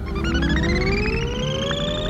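Electronic sci-fi tone that slides upward from low to a higher pitch over about a second and a half and then holds, with a rapid fluttering pulse above it and a low rumble beneath.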